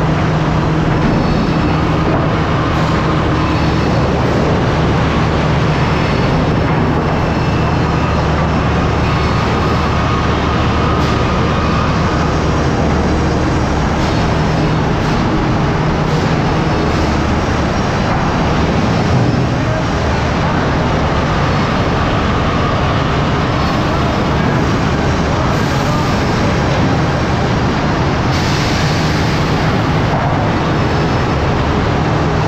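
Loud, steady din of sawmill machinery running, chain transfer decks and conveyors among it, with a constant low hum underneath.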